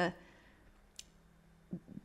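A pause in speech: the tail of a woman's word, then near quiet broken by one short, sharp click about a second in, and a soft short sound just before she speaks again.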